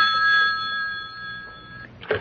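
Telephone bell ringing as a radio-drama sound effect: a steady ring that fades away over the second half and stops shortly before the end.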